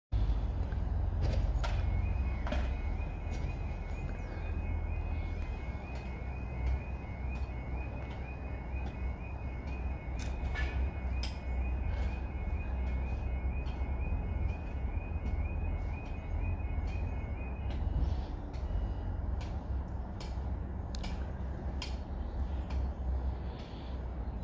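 UK level crossing audible warning: a rapidly alternating two-tone electronic alarm starting about two seconds in as the crossing activates for an approaching train, and stopping suddenly about three-quarters of the way through. Under it is a steady low rumble.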